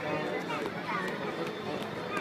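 Voices talking and calling over one another in a busy, echoing game hall, with a few faint knocks.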